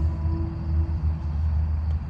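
Steady low rumble, with the tail of a bell-like chime tone fading away about a second in.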